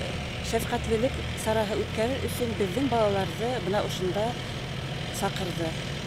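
A woman speaking over a steady low engine hum, like an idling vehicle.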